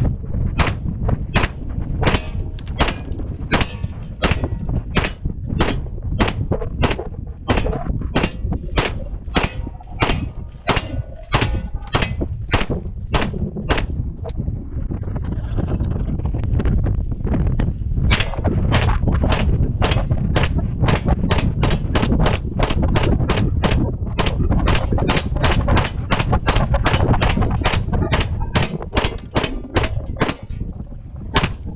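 A DIY Mac-style 9mm upper firing single shots in a steady string: about a shot and a half a second at first, then a pause of about four seconds while the gun is handled, then faster at more than two shots a second. A steady low rumble runs underneath.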